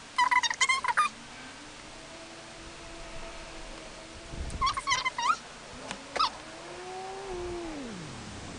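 A house cat calling: two quick bursts of high chirps, one just after the start and one about halfway through, and two long, low drawn-out yowls, the last sliding down in pitch at its end.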